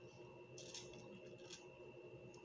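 Faint mouth sounds of biting and sucking on a lemon wedge: a few soft wet clicks over a steady low hum.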